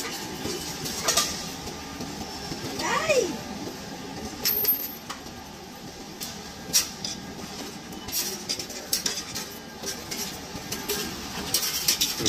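Coins clinking as they are fed by hand into a Coinstar coin-counting machine's tray, a few at a time, in irregular clicks.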